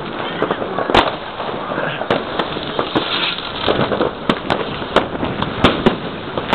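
Fireworks going off: an irregular run of sharp bangs and pops, about two a second, over a continuous background of more distant fireworks, with the loudest bang about a second in.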